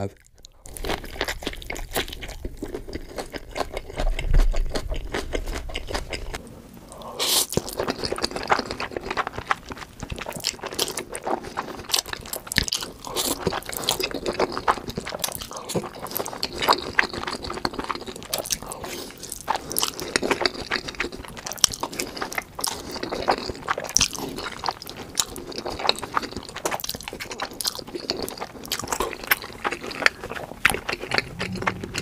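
Close-miked eating: a crunchy bite into crispy fried food and chewing. About seven seconds in, this gives way to wet slurping and chewing of black bean noodles (jjajangmyeon), with many small sharp clicks and smacks.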